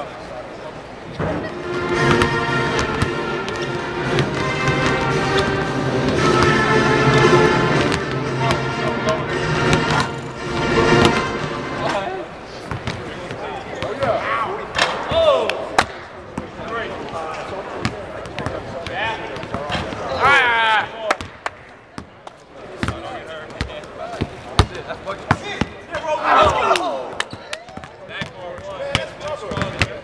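Music for roughly the first ten seconds. Then basketballs bounce repeatedly on a hardwood court, mixed with players' scattered shouts and calls.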